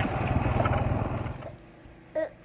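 Small engine of a ride-on farm vehicle running steadily, with rapid even firing pulses under the ride noise. It cuts off abruptly about one and a half seconds in, leaving quiet room tone.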